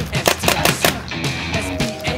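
Rock music with a fast drum beat.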